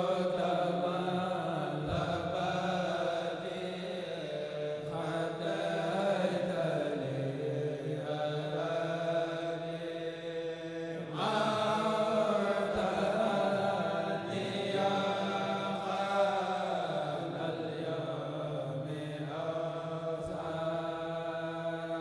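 A Mouride kourel, a group of men chanting a xassida (Sufi devotional poem) in unison without instruments, amplified through microphones. The voices hold long drawn-out melodic lines, with a fresh, louder phrase starting about halfway through and another near the end.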